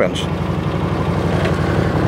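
Utility vehicle's engine idling steadily with a low, even hum.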